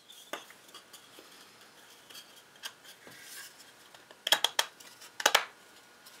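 Wooden inlay piece being handled and pressed into a cross-halving notch cut in a scrap test board, with small wood-on-wood clicks and two brief clusters of sharper knocks about four and five seconds in as it seats. The fit is snug but good, the slot having been widened by a hair.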